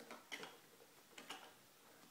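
A few light clicks of plastic toy parts as a baby's hands press and handle the pieces of an activity table, otherwise near silence.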